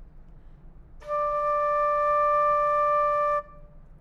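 Silver concert flute sounding one steady held D for about two and a half seconds. It starts about a second in and stops cleanly.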